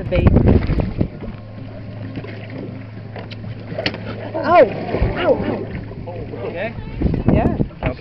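A boat's motor idling, a steady low hum, with rumbling wind and handling noise on the microphone in the first second and again near the end. A voice is heard briefly in the middle.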